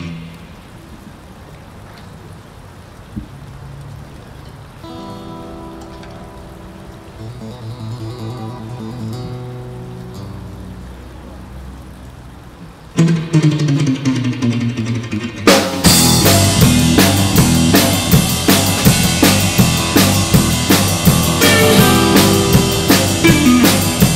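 Live band starting a surf song. Quiet plucked guitar and bass notes come first. About thirteen seconds in, a loud guitar line with a falling slide begins the song, and the drum kit and the rest of the band come in about two seconds later with a steady beat.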